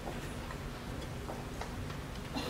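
A few faint, scattered clicks over a steady low room hum.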